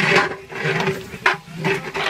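Scraping and rubbing of metal cookware as a steel bowl of diced potatoes is tipped over a large cooking pot: a few short rasping scrapes, the sharpest a little past halfway.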